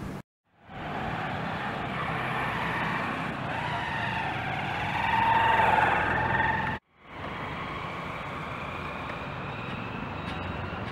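Road traffic: a motor vehicle's engine running and growing louder to a peak about six seconds in, then cut off abruptly, followed by steadier, quieter traffic noise.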